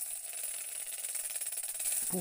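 Rattlesnake rattle sound effect: a steady, high-pitched dry buzzing rattle.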